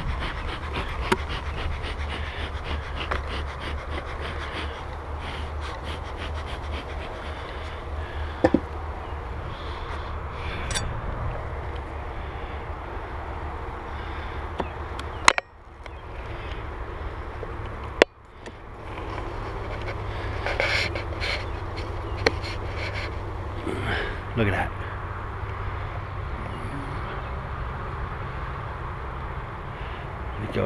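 Wooden beehive boxes and frames being handled: scattered clicks and scrapes, with two sharp knocks about fifteen and eighteen seconds in, over a steady low rumble.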